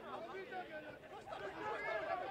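Several voices talking and calling over one another in the open air, the chatter of players and onlookers around a football pitch.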